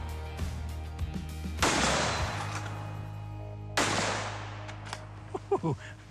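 Two rifle shots about two seconds apart from a Ruger American bolt-action rifle in 6.5 Creedmoor fitted with a muzzle brake, each a sharp crack with a long echoing tail, over background music.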